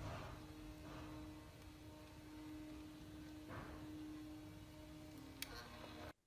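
Very quiet background with a faint steady hum that holds one low pitch and dips slightly near the end, plus a soft click shortly before the end.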